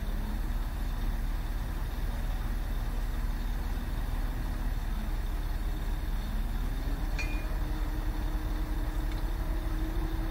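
Mobile crane's diesel engine running steadily with a low hum while it lowers a load; about six seconds in, the engine's pitch rises and then holds at the higher level.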